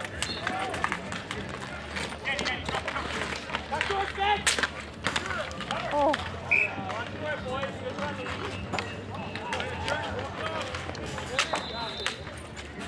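Street hockey play on asphalt: sticks clacking against the ball and pavement in sharp knocks, sneakers running, and players shouting to each other.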